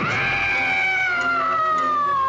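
A single long, high-pitched wailing cry that starts abruptly, is held and glides slowly down in pitch, a horror-film scream effect.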